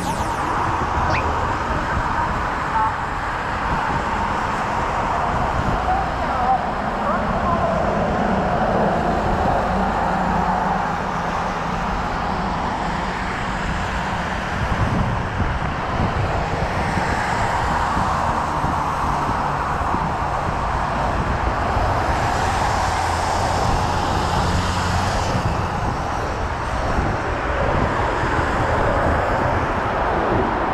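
Steady road traffic noise from cars on a multi-lane city road, heard while riding along among them.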